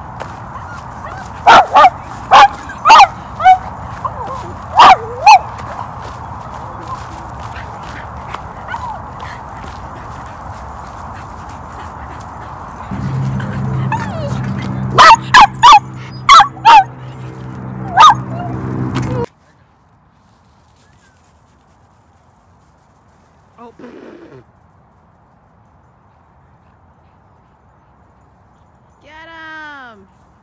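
Cavalier King Charles spaniel on a leash giving loud, sharp yips and whines in two flurries, the first a few seconds in and the second about halfway through, a sign of his excitement. A low hum runs under the second flurry, and the sound cuts off abruptly about two-thirds of the way through.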